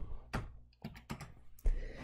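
Computer keyboard keys being tapped: a few scattered light keystrokes, then a heavier key press about one and a half seconds in.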